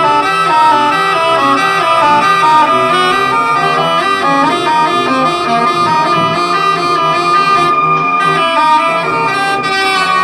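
Live drone-based improvised music: a woodwind playing over layered electronic tones from a laptop and controller. One high tone is held steady throughout while lower tones shift slowly beneath it.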